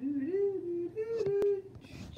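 A person humming a short tune, the notes stepping up and down, ending near the end; a sharp click about one and a half seconds in.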